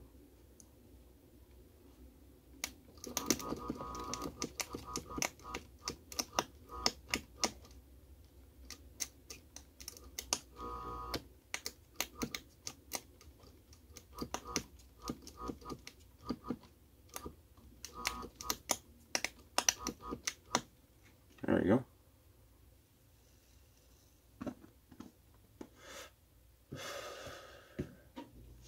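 Electric sparks snapping and crackling as the fan's two bare power wires are touched together and shorted, arcing in irregular runs of sharp clicks with a faint buzz behind some of them. Two short breathy bursts follow, one just before the middle of the run's end and one near the end.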